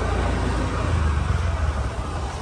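Street traffic: motorcycle engines running, heard as a loud, steady low rumble.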